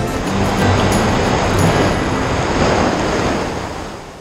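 Background music thinning out under a steady rushing noise, which fades away near the end.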